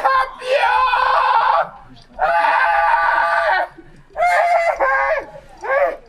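A man screaming in anguish: three long, high-pitched cries and a short one near the end, with brief breaths between.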